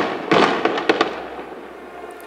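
Aerial fireworks going off: a loud burst about a third of a second in, a few sharp cracks within the next half second, then a rumble that fades away.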